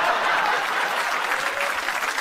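Studio audience applauding after a punchline, a steady wash of clapping.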